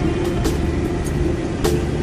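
Music with a beat and held notes, over the low rumble of a car driving, heard from inside the cabin.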